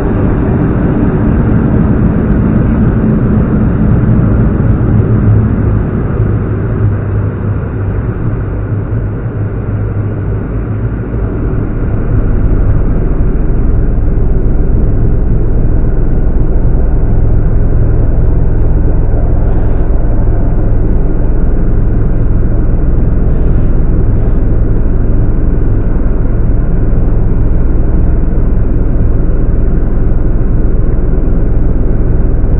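Steady low rumble of an ED72 electric multiple unit under way, heard from inside the carriage; the noise grows louder about twelve seconds in and then holds steady.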